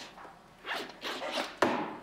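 Zipper on a leather handbag being pulled open in a few short rasping strokes as the bag is searched, the last and loudest starting sharply.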